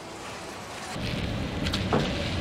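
Car-plant machinery noise: a steady hiss, joined about a second in by a louder low rumble and a couple of short knocks near the end.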